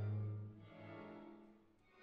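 Symphony orchestra playing sustained bowed-string chords. A loud held low note at the start fades about half a second in, followed by a softer swell that dies away near the end.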